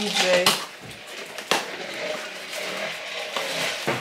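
A taped cardboard parcel being opened by hand: a sharp snap about one and a half seconds in, then the rustle of tape and cardboard flaps being pulled open.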